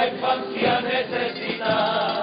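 A carnival comparsa's male chorus singing together in harmony.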